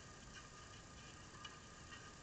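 Near silence: faint background hiss with a few soft, scattered ticks.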